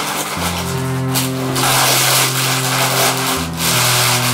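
Drama background score: slow sustained chords, the held low notes shifting to a new chord about half a second in and again near the end, under a steady noisy hiss.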